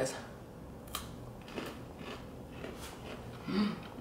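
A bite into a chocolate-covered pretzel with a sharp crack about a second in, followed by chewing with a few faint crunches. A short closed-mouth hum near the end.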